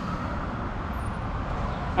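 Triumph Tiger motorcycle engine idling, a steady low rumble.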